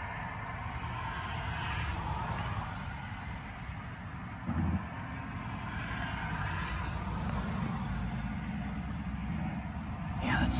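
Road traffic passing: a low rumble with a faint hiss that swells and fades twice, with one short bump about halfway through.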